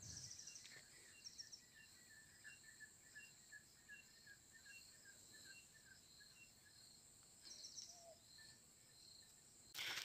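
Near silence: faint insect sounds, a steady high buzz with soft short chirps repeating a few times a second.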